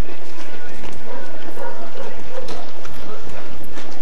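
Murmur of a large street crowd, many overlapping voices, with a few scattered knocks in the second half.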